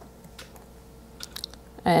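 Quiet room tone with a few faint, short clicks, then a woman's voice starts speaking near the end.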